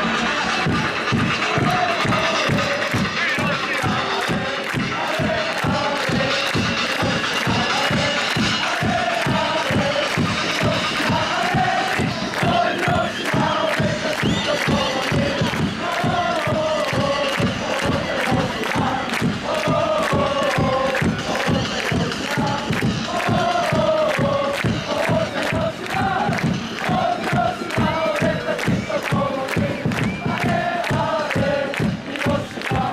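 Football supporters in the stands chanting in unison to a steady, rapid drumbeat.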